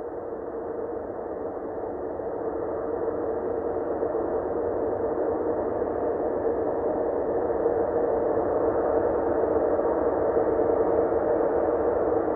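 Ambient soundtrack drone: a steady, hazy hum held on one note, slowly growing louder.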